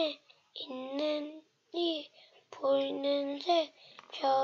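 A young boy's voice reading aloud in a drawn-out, sing-song way, in three held phrases with short pauses between them.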